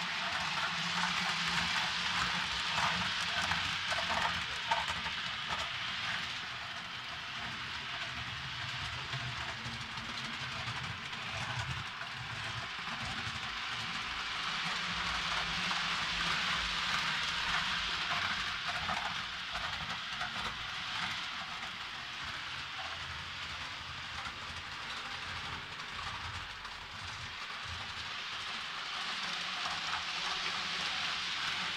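Model train running on the track of a railway layout: a steady hiss of its small electric motor and wheels on the rails, growing louder twice as it passes close.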